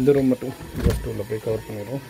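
A man talking, with one sharp click about a second in as a metal door lever and latch are worked to open a wooden door.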